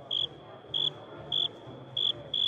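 A sparse electronic beat: four short high beeps, about one every 0.6 s, over a faint steady high tone, with a soft low pulse in step beneath.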